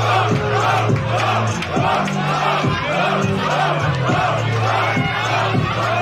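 Hip-hop beat with a steady, held bass line, and a crowd cheering and shouting over it between rap verses.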